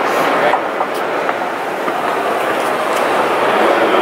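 Escalator running under a rider: a steady mechanical noise, with voices in the background.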